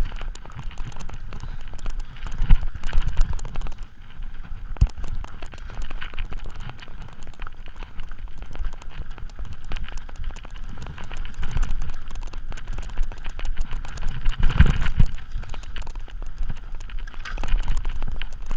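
Mountain bike rattling and clattering over roots, rocks and dirt on a fast technical trail descent: a continuous run of small knocks and rattles, with heavier thumps about two and a half seconds in and again near fifteen seconds in.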